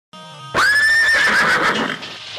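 Sampled horse whinny: one long neigh coming in about half a second in, rising then wavering as it fades, after a faint held synth chord.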